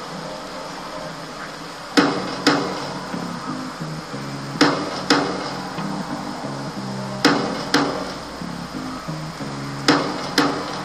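Music with a repeating low note pattern, punctuated by sharp percussive hits in pairs about half a second apart, a pair every two and a half seconds or so.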